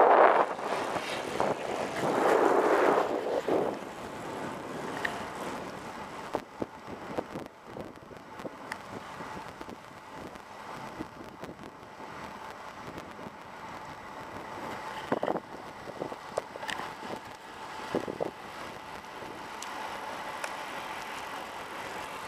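Wind noise on the microphone while cycling: two strong gusts near the start, then a steadier rush of wind and tyre noise on asphalt, with scattered small clicks and knocks.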